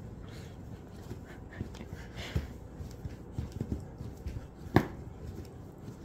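Bread dough being kneaded by hand on a countertop: soft, irregular thuds as the heels of the hands push and fold it, with one sharper knock a little before the end.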